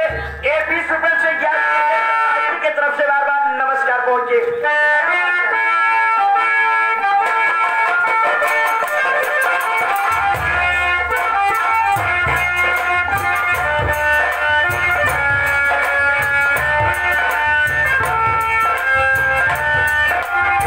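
Loud live folk stage music: a wavering melody line over the first few seconds, then a steady instrumental tune. About ten seconds in, a heavy nagada and dholak drum beat comes in and keeps going under the melody.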